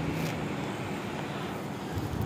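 Steady background street traffic noise, with a low engine hum that fades out in the first half-second.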